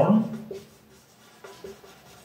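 Marker pen writing on a whiteboard: faint taps and light strokes as letters are written, after a man's voice trails off in the first moment.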